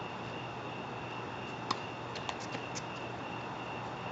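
Steady outdoor background hiss with a faint continuous high-pitched tone. A few faint sharp ticks fall in the middle, the first and loudest a little under two seconds in.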